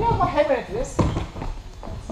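A man's voice speaking briefly and indistinctly, with a single knock about a second in.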